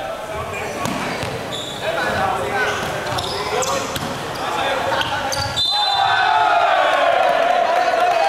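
Indoor volleyball rally: several sharp smacks of the ball being served and struck, echoing in a large sports hall, with voices calling. About five and a half seconds in a brief high tone sounds, and players then shout and cheer loudly as the point is won.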